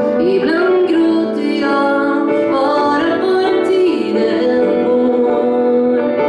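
A woman singing in Swedish, accompanying herself on a grand piano.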